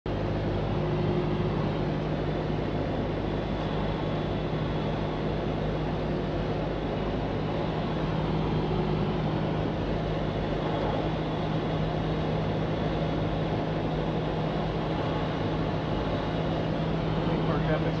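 Cessna 172's piston engine and propeller heard from inside the cabin: a steady drone with a constant low hum, holding one level. A voice starts right at the end.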